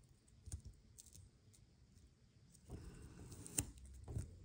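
Faint, scattered clicks and soft rustling of fingernails and a small tool on a glossy planner sticker sheet as a sticker is picked at and peeled off. The rustle picks up in the last second or so, with the sharpest click near the end.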